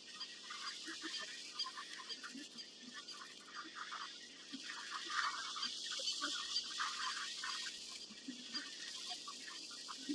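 A large herd of wildebeest grunting, many short calls overlapping continuously, over a steady background hiss.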